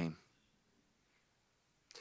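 Near silence: a pause between spoken sentences. A man's voice trails off just at the start, and speech picks up again at the very end.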